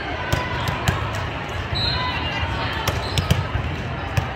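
Volleyballs being struck and bouncing on hard courts around a large, echoing hall: sharp smacks at irregular moments over a steady murmur of crowd chatter.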